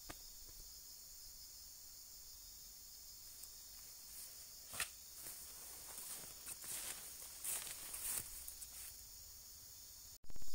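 Steady high-pitched drone of insects, with footsteps rustling through grass and undergrowth from about four to nine seconds in.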